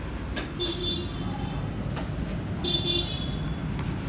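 Steady street traffic rumble with a vehicle horn sounding twice, each a short toot of under a second.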